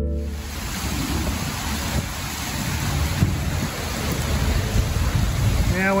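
Heavy rain falling, a steady hiss, with an uneven low rumble underneath.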